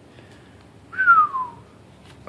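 A person whistling one short note that slides down in pitch, about a second in.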